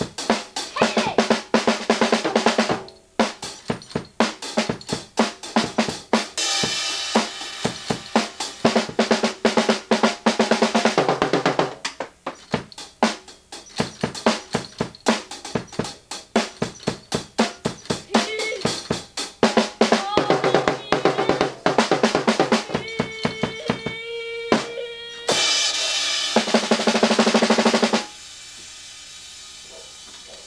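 Instrumental music led by a drum kit playing rapid snare and bass-drum hits over sustained backing notes, with no vocals. It stops suddenly near the end, leaving a faint steady hiss.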